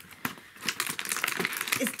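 Packaging of a perfume advent calendar being pulled open by hand, with a quick, irregular crinkling and crackling as the vials are worked out of their slots.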